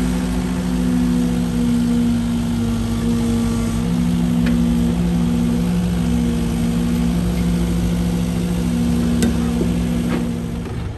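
Compact excavator's diesel engine running steadily close by, with one sharp click about nine seconds in.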